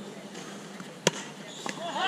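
Cricket bat striking the ball once with a sharp crack about a second in, followed by a fainter knock.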